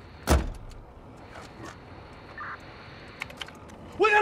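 A single loud, sharp bang with a heavy low thump about a third of a second in, followed by a few faint clicks.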